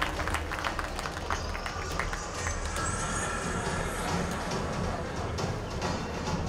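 Background music with a steady low bass, played over the venue's sound system during the pause while the judges' scores are tallied.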